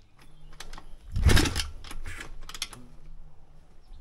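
Pit bike's 170 cc single-cylinder four-stroke engine being kick-started: a loud kick about a second in and a smaller one about two seconds in, with clicks of the kick-start mechanism around them, the engine turning over but not catching. It is hard to start when cold.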